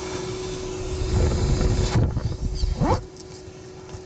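Inflatable tent fabric being pulled and rubbed by hand close to the microphone: low rumbling rubs in the middle with a short rising squeak near the end, over a steady hum.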